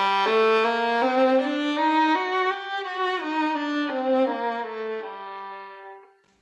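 Solo violin playing an A harmonic minor scale over one octave, note by note, ascending and then descending. It ends on a held low note that fades out just before the end.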